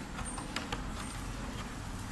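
Crinkling and crackling of plastic packaging and a paper leaflet being handled, a few sharp crackles, over a steady low background hum.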